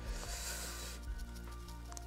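Soft background music with steady held notes. In the first second comes a brief, soft, high rustling hiss of fine foliage scatter being shaken out of a plastic packet onto a model tree.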